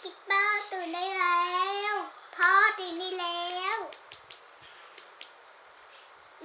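A young girl singing two long, drawn-out phrases in a high voice, followed by a few faint clicks.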